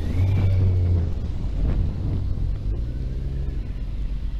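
Motorcycle engine running at low speed with a steady low hum, louder for the first second or two and then settling.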